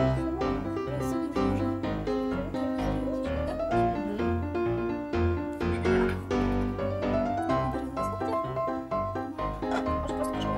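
Background music led by piano, with a steady beat.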